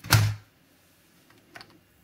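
A brief clack from 18650 lithium-ion cells being handled on a desk, then quiet with one faint click about a second and a half in.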